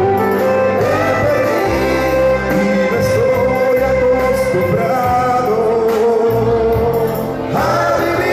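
A man singing karaoke into a handheld microphone over a backing track, with a long held note in the second half.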